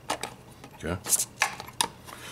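Several sharp plastic clicks and knocks from the space heater's rotating wall plug being pressed and turned and its plastic housing handled.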